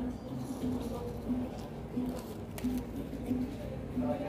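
Quiet restaurant background: faint distant voices and possibly music, with a few soft clicks.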